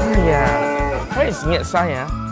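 A cow mooing, one long falling call in the first second followed by shorter wavering calls, over background music with a steady beat.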